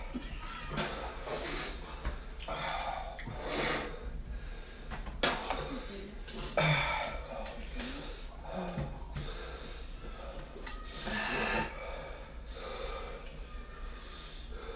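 Men breathing hard through the mouth, sharp breaths in and out about every second or so, from the burn of Carolina Reaper chillies in their mouths.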